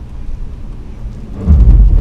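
Low rumble of a 2016 Honda Pilot AWD crawling up a rocky dirt trail, with a much louder, deep jolt or rumble starting about one and a half seconds in as the wheels climb over the rough ground.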